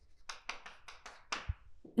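Chalk scratching and tapping on a chalkboard as a word is written: a quick run of about six short strokes, followed by a low thump about one and a half seconds in.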